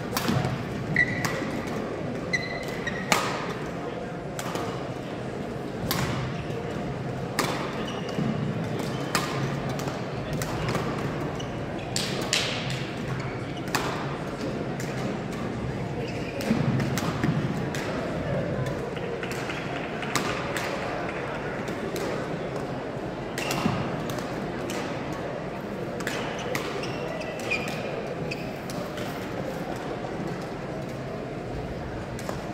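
Badminton rackets hitting shuttlecocks: sharp, irregularly spaced smacks, some close and some from other courts, in a large gym hall.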